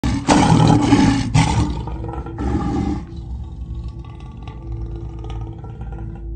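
Lion roar sound effect: two loud, rough roars in the first three seconds, the first one longer, then a quieter stretch with faint steady tones underneath.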